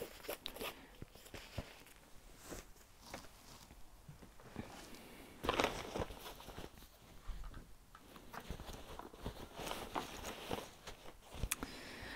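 Quiet handling noises: soft rustling and scattered light clicks of a cross-stitch project being handled, with a louder rustle about five and a half seconds in.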